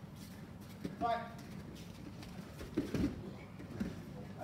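A grappler swept off his feet lands on foam mats with a dull thump about three seconds in, with a smaller knock just before the end.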